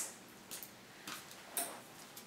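Three faint clicks about half a second apart from handling a pair of white plastic over-ear headphones.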